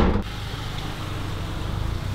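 A loud rushing noise breaks off right at the start, then a small car's engine runs steadily at low revs: the low hum of a Nissan Micra idling or creeping along.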